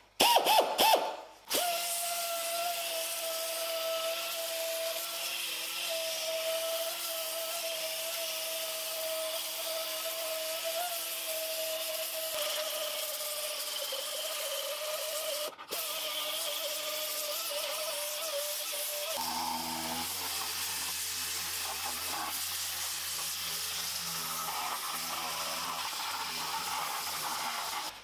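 A small pneumatic sander with a paper disc runs with a steady whine and air hiss as it sands paint off an ABS plastic air duct. There is one brief break about halfway through.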